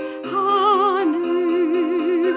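Korean Buddhist hymn (chanbulga) sung by a woman with piano accompaniment: after a brief dip at the start, the voice comes in on a held phrase with wide vibrato over sustained piano notes.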